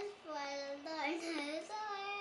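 A young girl singing a memorised Bible verse in a high child's voice, with long held notes that step up and down in pitch.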